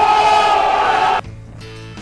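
A person's voice holding one long, loud, high-pitched cry or sung note, which cuts off suddenly just over a second in; a much quieter stretch follows.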